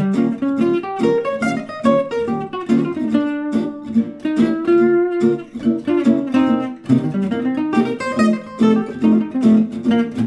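Archtop guitar playing a quick single-note jazz blues solo line in B flat, a stream of arpeggio runs with trill ornaments.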